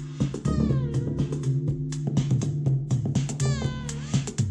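Minimal deep-house groove played live on synthesizers and an Elektron Digitakt drum machine: a steady beat over a sustained low bass line. A synth voice swoops in pitch twice, sliding down about half a second in, then rising and falling near the end.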